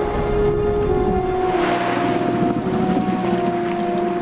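Orchestral score holding long, steady notes over a rushing water sound that swells to its loudest in the middle.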